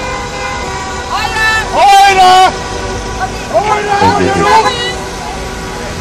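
Car horns honking in long, steady blasts from a passing line of cars, with loud shouts from people about two seconds in and again near the four-second mark.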